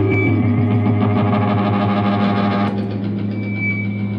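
Electric guitar laid flat on the floor, worked by hand through effects pedals, giving distorted noise over a steady low drone. The dense noisy layer drops away about two-thirds of the way in, leaving the drone and a thin high whine.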